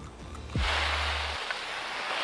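The tail of a TV show's sponsor music ends with a quick falling sweep about half a second in. A louder, steady rushing hiss of open air on a ski slope then takes over.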